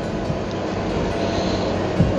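Soft background music with a steady rushing noise, even and unchanging, in a gap between spoken phrases.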